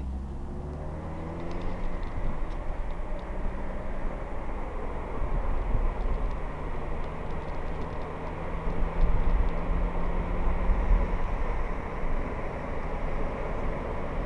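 Road noise heard from inside a moving car: a steady rumble of engine, tyres and wind, with the low rumble swelling louder in the middle and second half.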